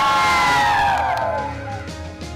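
A group of schoolchildren cheering together in one long, held shout. The voices drop in pitch and fade out about a second and a half in, over background music.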